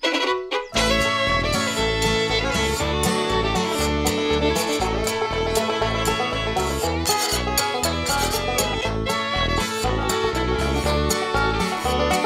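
A small bluegrass band starts playing about a second in: acoustic guitar, fiddle and banjo over a keyboard playing the string-bass part, with a steady pulsing bass line.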